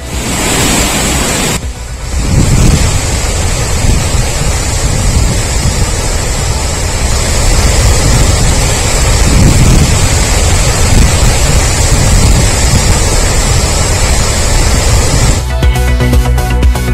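Loud, steady rush of river water flowing fast below a dam that is releasing floodwater. It stops just before the end.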